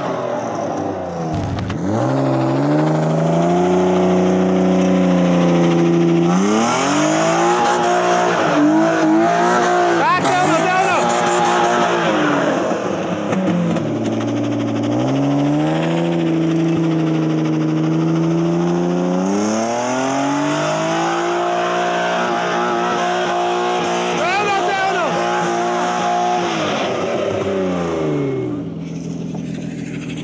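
BMW E36's engine revving hard while the car is drifted around a cone: two long stretches held at high revs with a dip between them, then the revs fall away near the end, with tyre noise under the engine while the revs are held.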